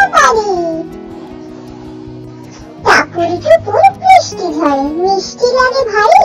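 Bengali children's rhyme sung in a child-like voice over a backing music track; the voice breaks off for about two seconds early on, leaving only the quieter accompaniment, then comes back in.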